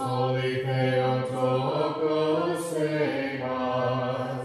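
Orthodox liturgical chant: voices singing a hymn without instruments, one low voice holding a steady note while a higher voice moves above it. The held note fades out just after the phrase ends.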